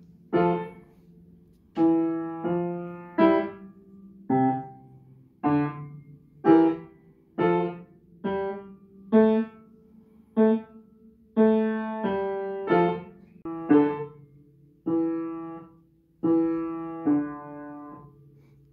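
Upright piano played slowly and haltingly, one chord or note at a time about once a second, each ringing and fading before the next: a new piece being learned.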